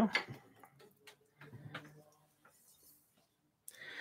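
A few faint, scattered wooden clicks and taps from handling the takadai braiding stand and its wooden sword, mostly in the first two seconds, then near silence.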